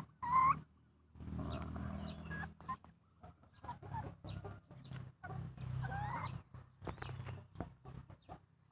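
Chicken giving short, scattered clucks and rising chirps, over a low steady hum.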